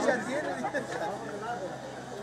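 Chatter of several people talking, with no single clear speaker.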